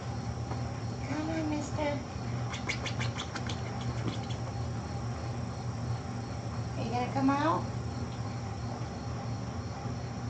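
Two short vocal calls that rise and fall in pitch, one about a second in and one about seven seconds in, over a steady low hum. A quick run of about ten light clicks comes around three seconds in.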